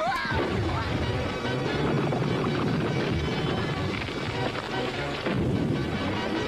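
Cartoon soundtrack: background music mixed with a continuous rumbling, crashing noise effect, with a short sliding whistle-like tone at the very start.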